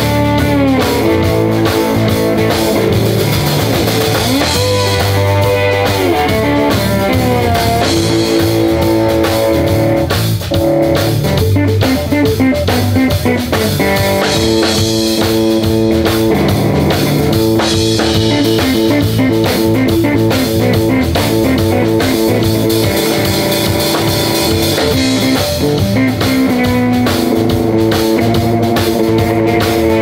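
Live electric blues band playing an instrumental passage: electric guitar lead with sustained notes that bend up and down, over a drum kit.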